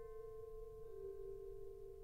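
Soft, slow concerto music for flute and orchestra: steady held notes, with a lower note taking over about a second in.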